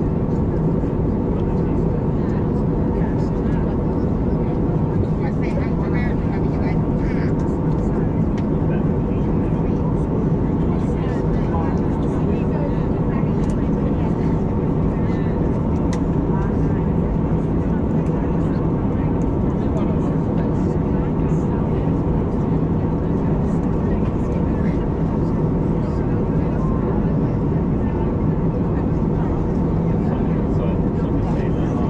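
Steady cabin noise of an Airbus A320-251N in flight: the even drone of its CFM LEAP-1A turbofans and airflow past the fuselage, with a low steady hum.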